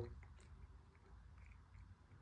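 Near silence: faint room tone with a few soft small ticks from a drinking glass being lifted and drunk from.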